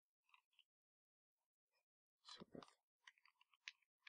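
Near silence, broken by a few faint clicks and one brief soft noise a little past halfway.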